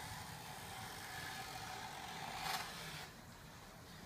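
Small hand plane shaving a wooden wing leading edge in one long pass: a steady shaving hiss that swells briefly near its end and stops about three seconds in.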